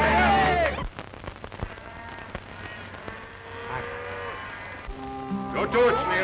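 Film soundtrack: crowd shouting over music cuts off less than a second in. A few seconds of faint, quiet sound follow, then music with held notes comes in about five seconds in.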